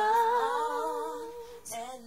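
Slowed-down female R&B vocal sung a cappella: one long wordless note held with vibrato, fading out about three quarters of the way through, with a new note beginning near the end.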